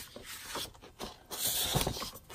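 Sheets of patterned designer series paper sliding and rustling as they are turned over and moved aside, with a brief swell of rustle about a second in.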